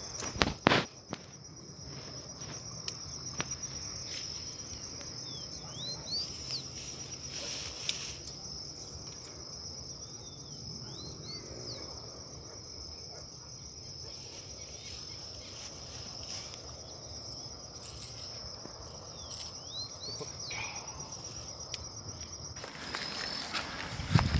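Insects trilling steadily in one high continuous tone, with a few short rising chirps from another small creature now and then; the trill stops shortly before the end. A couple of knocks sound about a second in.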